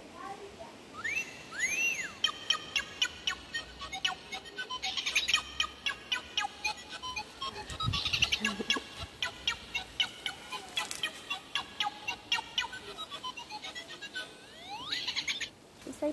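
A long string of high, bird-like chirps, trills and swooping whistles, rapid and loud.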